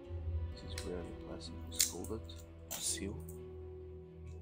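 Plastic shrink wrap on a sealed card deck crinkling as a scissors tip is forced into its corner: a sharp click a little under two seconds in and a longer rustle at about three seconds, over background music.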